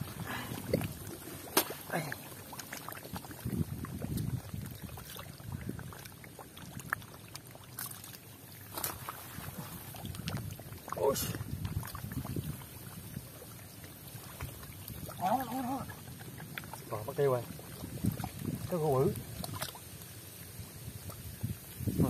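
A man wading and groping through waist-deep mud and shallow water: irregular sloshing and squelching with scattered sharp smacks and splashes. A man's voice sounds briefly a few times in the second half.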